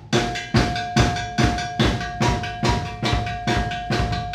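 Acoustic drum kit played with sticks in a steady beat, about two to three strokes a second, under a sustained ringing tone that holds throughout.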